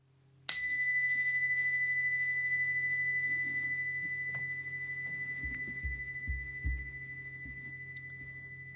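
A meditation bell struck once about half a second in, ringing with a clear high tone that dies away slowly, marking the end of a period of silent meditation.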